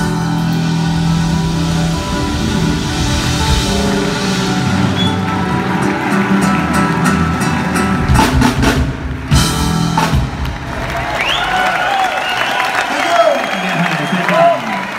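Live smooth-jazz band (acoustic guitars, violin, bass guitar and drum kit) playing the closing bars of an instrumental tune, with a run of drum hits between about eight and ten seconds in. The audience then breaks into applause and cheering.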